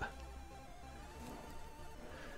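Faint Commodore 64 game music from the VICE emulator: a couple of quiet held tones, one drifting slightly in pitch.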